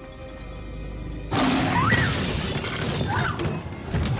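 Music from a commercial soundtrack, then about a second in a sudden loud crash with shattering that keeps on to the end.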